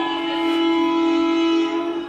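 One long held note with many overtones, sliding up into pitch at the start, held steady for about two seconds, then fading, from the soundtrack of a projected film.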